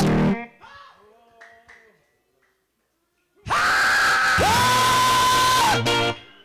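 Church worship singing with guitar backing stops in the first half second and fades to near silence; about three and a half seconds in, a loud, long shouted cry into the microphone rises in pitch and then holds for some two seconds before cutting off.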